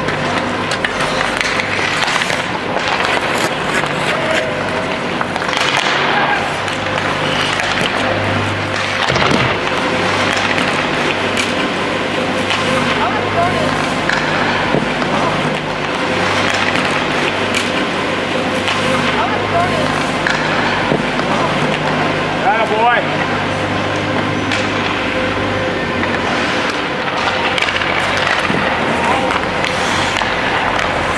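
Ice skates scraping and carving on rink ice, with indistinct voices carrying in the rink over a steady low hum. There are a few short knocks of sticks and pucks.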